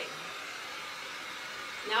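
Heat gun blowing steadily, drying freshly brushed paint on a wooden door.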